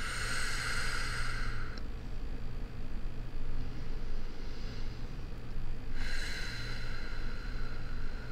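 A woman breathing slowly and deeply: one long breath at the start and another about six seconds in, with quieter breathing between.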